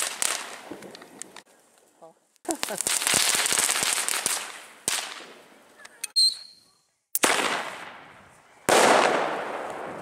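Fireworks crackling: several separate bursts of dense crackle, each starting suddenly and dying away over a second or two, with short quiet gaps between them. The loudest burst comes near the end.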